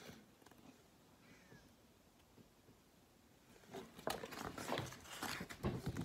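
Near silence for about three and a half seconds, then a run of irregular rustles and light knocks from a paper picture book being handled and turned.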